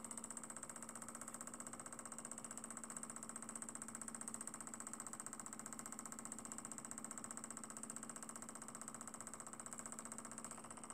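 Small homemade Stirling engine, with a Pyrex test-tube hot end and an aluminum displacer, running steadily. Its piston and linkage make a quiet, fast, even mechanical beat.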